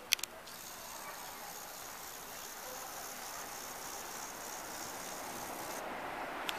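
Two quick clicks, then a steady high hiss of the camcorder's zoom motor for about five seconds, cutting off abruptly near the end, over faint outdoor background noise.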